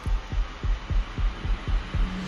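Fast, low heartbeat-like thumping, about three beats a second, over a steady hum: a sound-design pulse of the kind laid under a tense film scene.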